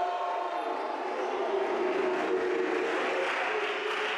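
Crowd noise in a sports hall: a steady, echoing mix of voices from players and spectators between rallies of a volleyball match.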